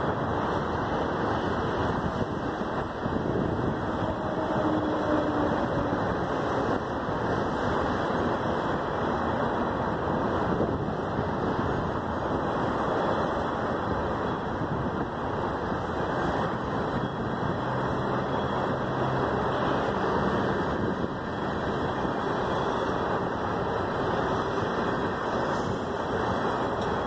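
Freight train of tank cars rolling past, a steady rumble of wheels on the rails.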